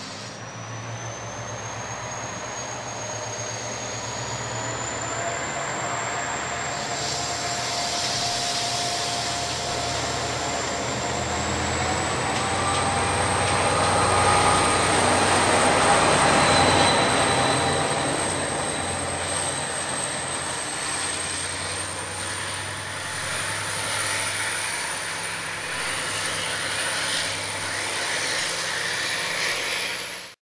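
Diesel-electric locomotive propelling a train of SA passenger carriages out of the platform. The engine hums low and a whine rises in pitch over the first several seconds as the train accelerates. It is loudest as the locomotive passes about halfway through, then eases off and cuts off suddenly at the end.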